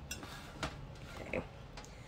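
A few faint, short clicks as beans slip from a tipped glass canning jar into an empty slow-cooker crock, over low room hum.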